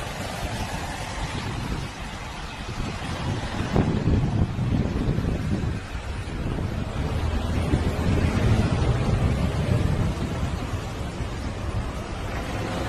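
Wind rumbling on the microphone over the engine drone of a small twin-engine propeller plane landing on a runway.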